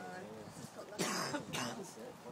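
A person coughing twice, about a second in, after a brief low murmur of voice.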